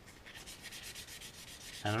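Sanding pad rubbed back and forth under light pressure over a small clear plastic model part: a faint, fine scratching as the sanding marks are polished out. A spoken word comes in near the end.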